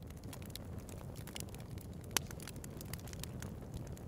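Crackling fire: a steady low rumble with scattered sharp pops, one louder pop about two seconds in.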